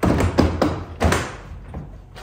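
Hard plastic knocking and clunking from a stacked DeWalt ToughSystem 2.0 drawer box as it is rocked by hand on the box beneath. The boxes clip together only in the centre, leaving the front and back unsupported, so the stack wobbles. There are several knocks in the first second or so, the loudest right at the start.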